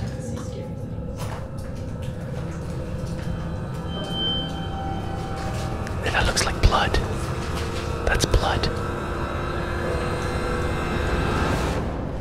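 Eerie, drone-like background music over a steady low rumble. A few sharp knocks or clicks cut through it about six and a half and eight and a half seconds in.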